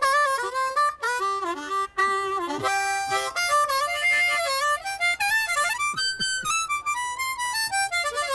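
Solo harmonica played unaccompanied in quick runs of notes, some sliding in pitch, broken by a few short breaths between phrases.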